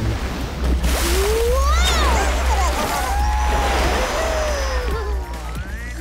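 Cartoon sound effect of a big wave rushing and splashing, mixed with music whose tones glide up and down. The rush swells about a second in and dies away near the end.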